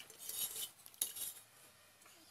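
Water sloshing in a stainless steel basin as a large silver carp is rubbed and turned by hand, the fish bumping and scraping against the metal. There is one sharp knock about a second in.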